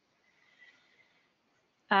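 A pause in speech, near silence with a faint thin high tone, then a woman's voice beginning a drawn-out 'um' near the end.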